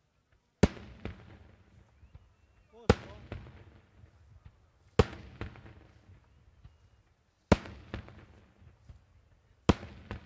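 Daytime fireworks shells bursting overhead: five loud bangs about two seconds apart, each followed by a rumbling echo and a few smaller pops.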